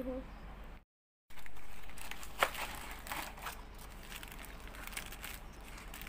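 A cardboard trifle-kit box being opened and its plastic-wrapped packets rustling and crinkling as they are handled, with one sharp snap about two and a half seconds in.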